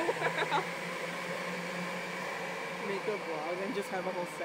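A steady low mechanical hum with an even airy noise, with brief snatches of voices just after the start and again near the end.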